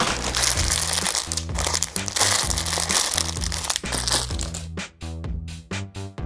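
Thin plastic packaging crinkling as a bag is handled and opened, over background music with a steady beat. The crinkling stops after about four and a half seconds, leaving only the music.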